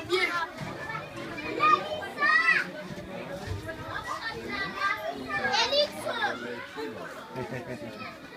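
A crowd of schoolchildren chattering and calling out, with high-pitched shouts standing out about two seconds in and again a little past halfway.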